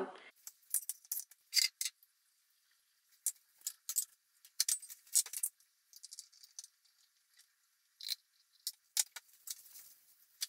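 Scattered light clinks and clatters of kitchen crockery and utensils being handled on a countertop, with short quiet gaps between them.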